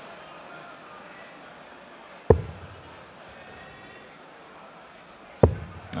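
Two steel-tip darts striking a bristle dartboard with sharp thuds, one a little over two seconds in and the other near the end, over a low murmur of the hall.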